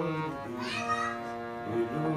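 Harmonium playing held chords, its reeds sounding steadily. About two-thirds of a second in, a brief high sound sweeps up and back down over the chord.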